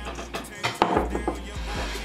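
Handling knocks and rubbing as a cap's brim is pulled off the cylindrical container it was curved around: a cluster of sharp knocks about a second in, over background hip-hop music.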